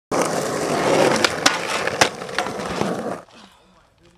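Skateboard wheels rolling loudly over rough asphalt, broken by several sharp clacks, with the rolling cutting off about three seconds in.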